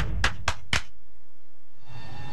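Four sharp percussion hits, about four a second, closing a TV promo's music sting; they stop about a second in.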